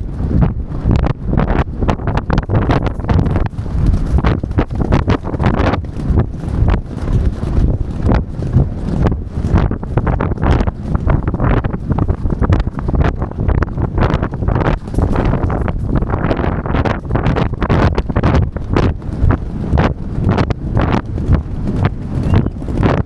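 Racehorse galloping on turf, a continuous run of hoofbeats under heavy wind noise on the rider-mounted camera's microphone.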